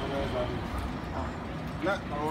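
Low, steady street rumble with faint voices in a lull of talk; a voice starts up again near the end.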